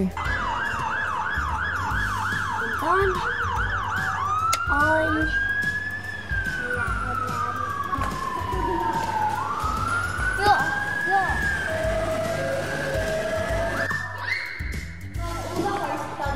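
Fire engine siren sounding a fast yelp, about three rises and falls a second, for the first four seconds, then switching to a slow wail that sweeps down and climbs back up. A short steady higher tone comes near the end.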